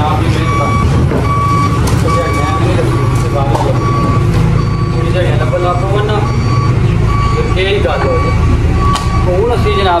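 Backhoe loader's diesel engine running steadily with its reversing alarm beeping at an even pace.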